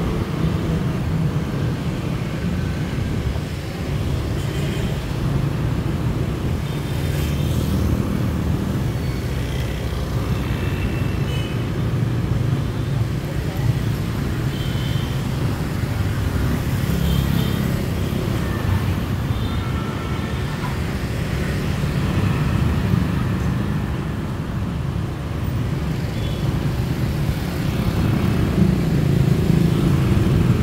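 Evening street traffic, mostly motorbikes with some cars, passing close by as a steady low engine rumble, with short high-pitched sounds scattered through it.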